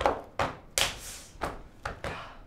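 A series of sharp percussive strikes, about five in two seconds at uneven spacing, each with a brief ringing tail; the loudest comes a little under a second in.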